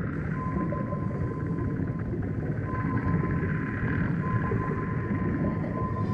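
Ambient drone soundtrack: a dense low rumble with a thin, steady high tone held through it that drops out and returns a few times.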